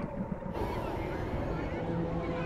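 Film soundtrack of a crowded beach: a murmur of voices, joined about half a second in by a low, steady droning tone.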